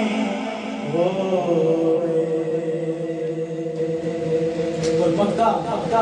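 A man's unaccompanied voice singing a naat into a microphone, holding one long steady note from about a second in until near the end, then moving on into faster phrases.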